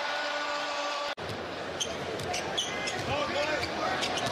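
Basketball game sound in a crowded arena: a ball bouncing on the hardwood court over steady crowd noise. The sound drops out for an instant about a second in at an edit.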